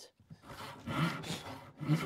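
Hand saw cutting through a clamped wooden board: one long rasping stroke, then the next stroke starting near the end. The saw is blunt, by its user's own word.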